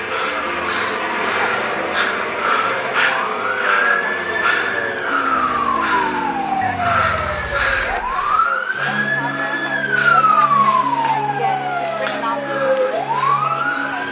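Emergency vehicle siren wailing, its pitch rising and falling in slow sweeps, about three cycles. A lower sound glides steadily downward and dies out about two-thirds of the way through.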